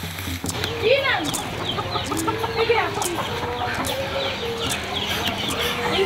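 Chickens clucking and calling, a string of short squawking calls.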